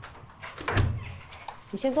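A panelled room door thuds shut about three-quarters of a second in, among smaller clicks and knocks. A short spoken phrase follows near the end.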